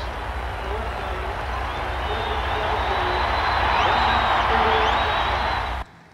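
Football stadium crowd cheering in a TV game broadcast, a steady roar that swells a little and cuts off suddenly near the end.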